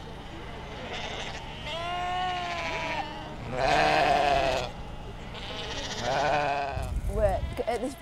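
A large flock of Icelandic sheep bleating: three long bleats about two, four and six seconds in, the middle one loudest, over the steady background noise of the packed flock. A brief low rumble comes near the end.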